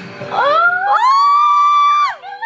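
High-pitched screaming of excitement from one or two women: a long scream that rises in pitch about half a second in, is held for over a second and breaks off near the end.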